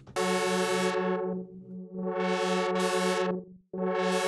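A sustained, buzzy single synth note from Arturia Pigments, run through its 24 dB-per-octave low-pass filter while the cutoff is swept by hand. The tone goes dull about a second and a half in, opens up bright again twice, and cuts out briefly just before the end before reopening.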